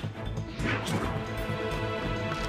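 Dramatic background score with a pulsing low beat and held tones. A sweeping noisy hit, like a sound-effect accent, comes under a second in.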